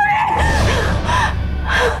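A woman crying out and then gasping sharply about three times as she jolts awake from a nightmare, over low background music.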